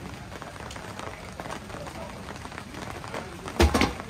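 Steady rain pattering on a wet paved patio, then a loud knock near the end as the metal long-handled dustpan strikes the stainless-steel trash can.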